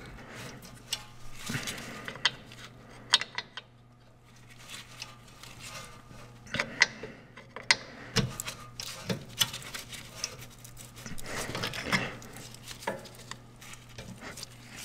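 Screwdriver levering the parking brake cable's sleeve back against a rusty rear brake caliper bracket: irregular metallic clicks, knocks and scraping as the tool and cable shift against the metal.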